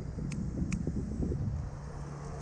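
A motorcycle's auxiliary-light switch clicking two or three times, quickly, over a low rumble of traffic and wind.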